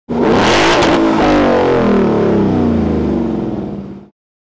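Car engine revving: the pitch climbs sharply in the first second, rises again briefly, then the revs fall away slowly as the sound fades out.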